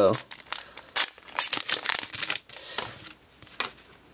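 A foil Pokémon booster pack wrapper being torn open and crinkled by hand, with a dense run of crackling rustles that thins out and quietens near the end as the cards are pulled out.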